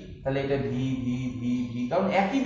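A man's voice holding one long, steady-pitched syllable, drawn out for well over a second.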